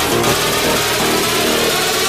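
Loud electronic dance music: a dense, heavily distorted synth sound.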